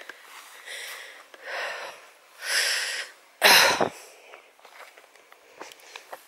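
A person breathing and sniffing while walking: several short noisy breaths about half a second each, with one louder, sharper sniff about three and a half seconds in.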